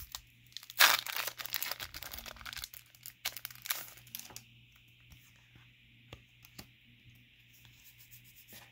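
A Pokémon card booster pack's foil wrapper is torn open with a sharp rip about a second in, then crinkles until about four and a half seconds in as the cards are slid out. After that come quieter scattered light clicks of the cards being handled.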